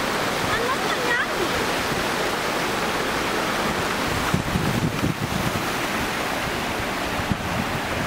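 Steady splashing of water from an outdoor plaza fountain, with a few soft low bumps about halfway through.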